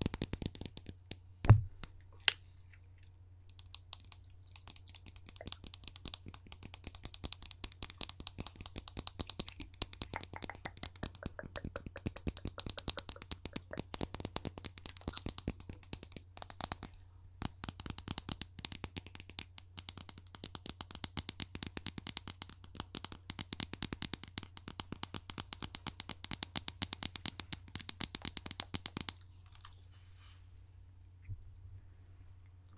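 Rapid fingernail tapping and clicking on a small hard cylindrical object held close to the microphone, in dense runs with short pauses. A single loud thump comes about a second and a half in, and a low steady hum runs underneath.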